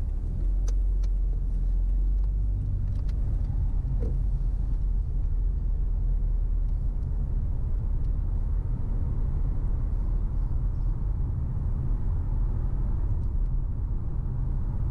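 Car pulling away from a stop and driving along a city street: steady low rumble of engine and tyre noise. A few faint clicks come in the first three seconds.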